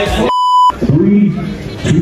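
A short, steady beep of about 1 kHz lasting under half a second, with all other sound cut out while it plays: an edited-in censor bleep. A person's voice comes back right after it.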